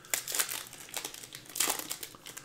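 Foil wrapper of a Panini Prizm Monopoly basketball card pack crinkling as it is torn and peeled open by hand, in irregular crackles that are loudest about half a second in and again near the end.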